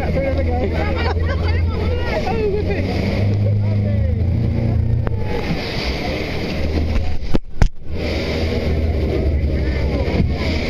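Speedboat engine droning steadily while the boat runs through rapids, with rushing water and wind on the microphone. About seven and a half seconds in, the sound breaks off briefly with a couple of sharp knocks.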